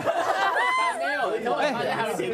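Speech only: several voices talking at once.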